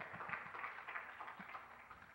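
Audience applauding, the clapping thinning out near the end.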